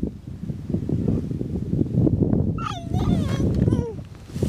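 A toddler's high-pitched wordless call, about a second long near the end, falling in pitch, over a steady low rumble of wind on the microphone.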